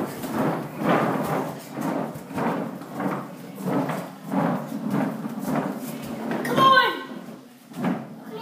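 Small plastic skateboard wheels rolling on a hardwood floor, a rumble that surges and fades about once a second. Near the end a young child gives a short cry.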